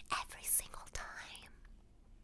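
A woman's whispered, breathy voice close to the microphone, unpitched with sharp hissing sounds, fading to near silence about one and a half seconds in.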